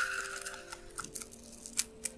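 A few faint, crisp clicks and crackles of fingers handling and tearing a fresh mint leaf over a teacup, with a faint steady hum underneath.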